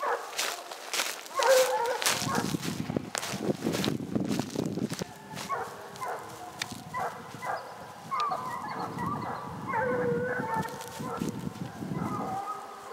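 Dogs barking and baying after a bear they have just taken off after, with longer drawn-out calls about a second in and again near the end. Sharp clicks and rustles run through the first few seconds.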